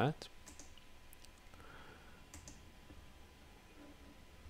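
A few faint, sharp mouse clicks, most of them in the first second and a close pair a little past halfway, over low room hum.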